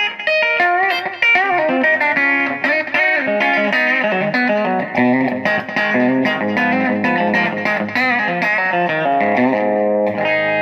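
Telecaster-style electric guitar with Joe Barden T-style pickups and brass bridge saddles, played on the bridge pickup through a Fender Pro Junior amp with a little delay and reverb: quick single-note lead lines with bent notes, then a chord left ringing near the end.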